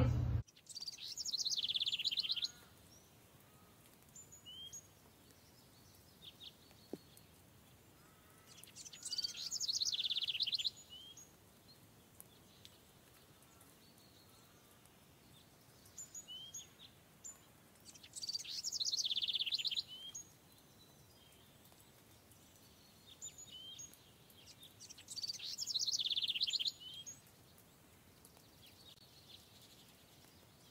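A songbird singing short, fast trilled phrases, four times about eight seconds apart, with faint high chirps in between.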